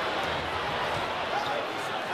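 Arena crowd noise, a steady murmur, with a basketball being dribbled up the court on a hardwood floor.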